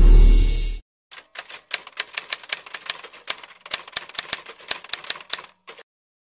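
A loud, deep sound cuts off abruptly less than a second in; then a typewriter sound effect: sharp key clacks in an irregular run of about five a second for about four and a half seconds, typing out the on-screen tagline.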